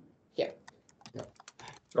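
Faint, irregular keystrokes on a computer keyboard, picked up over a video-call microphone, with a brief murmur of a voice near the start.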